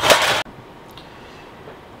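Stacked metal baking pans scraping and clattering as they are pulled out of the drawer under an oven. The clatter stops abruptly about half a second in, leaving quiet room tone.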